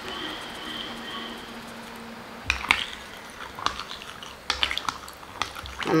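A spoon stirring soaked rice, green peas and water in a glass bowl, with light liquid stirring. From about two and a half seconds in it clinks against the glass at irregular intervals.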